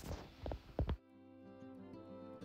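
A few dull thumps of footsteps on stony ground, then soft instrumental background music cuts in about a second in, with sustained, gently changing notes.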